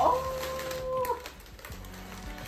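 A woman's drawn-out, high "Ooh!" of delight, held on one steady pitch for about a second, with wrapping paper crinkling as an item is unwrapped.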